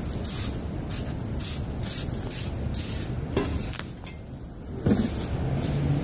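Street noise: a steady low rumble of traffic under a run of short, hissy rustles, about two a second, with a brief lull near the end.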